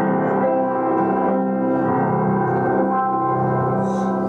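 Slow instrumental church music on a keyboard instrument, playing long, sustained chords with no singing.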